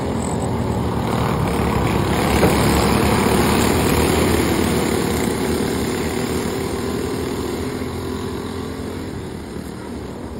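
Small engines of several dirt-track racing karts running at speed together, growing louder as the pack comes past about three seconds in, then fading as it moves away down the track.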